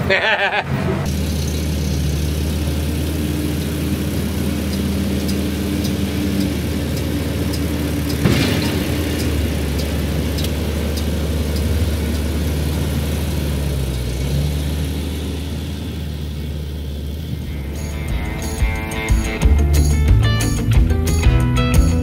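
A vehicle engine droning steadily, heard from inside the cab, with a single short knock about eight seconds in. Near the end, music with a beat comes in.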